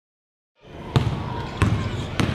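Basketball dribbled on a hardwood gym floor: two bounces about two-thirds of a second apart, starting after a short silence.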